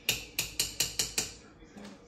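A spoon clinking against a glass jar of bouillon paste as it is scooped out: about six quick, sharp taps in just over a second, then they stop.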